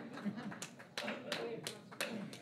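Scattered handclaps from an audience, a few claps a second and thinning out, over murmured talk.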